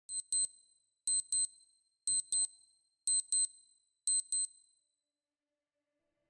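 Electronic beeper sounding in quick pairs: five high-pitched double beeps, one pair a second, in the rhythm of a digital watch alarm.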